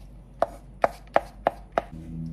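Five sharp knocks in quick succession, about three a second, as a hard kitchen utensil strikes a surface during food preparation.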